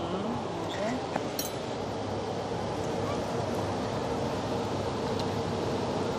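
Steady background room noise with faint low voices in the first second and a few light clinks of tableware at a meal.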